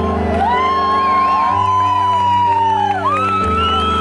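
Piano chords played live, held and changing every couple of seconds, with long gliding whoops from the crowd over them.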